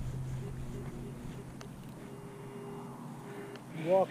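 A metal detector's audio signal: a few faint held tones, two low and one higher in the second half, as its coil is swept over the ground.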